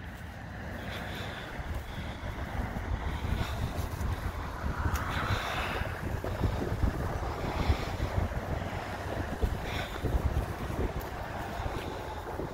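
Wind buffeting the microphone: a steady rush with a gusting low rumble.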